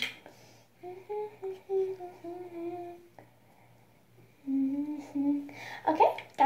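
A girl humming a tune with her mouth closed: a phrase of several level held notes, a pause, then a shorter, lower phrase near the end.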